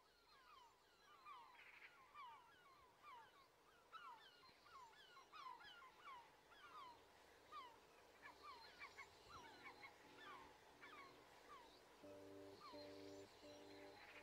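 Faint chorus of many bird calls, short downward-sliding chirps overlapping one another, as part of an instrumental rock recording. In the last few seconds soft pulsed keyboard chords fade in, repeating about every 0.7 s with a low bass note underneath.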